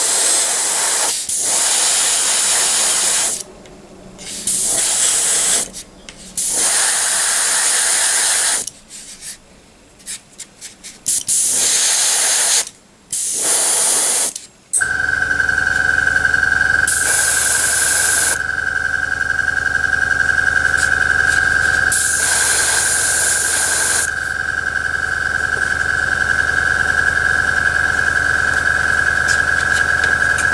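Airbrush spraying in short bursts of hiss as the trigger is pressed and released. About halfway through, a compressor starts and runs steadily with a low hum and a high whine, with two more bursts of spray over it.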